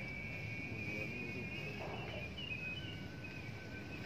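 Faint outdoor background with a steady high-pitched whine, joined by a second, lower steady tone a little past halfway.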